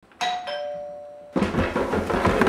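Two-tone ding-dong doorbell chime: a higher note, then a lower one, ringing for about a second. Then, from a little past halfway, quick footsteps on wooden stairs.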